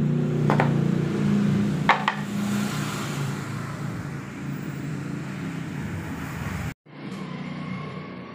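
Thin plywood panels knocking against each other and the tiled floor as they are handled, twice in the first two seconds, over a steady low hum that slowly eases off. The sound drops out abruptly for an instant near the end.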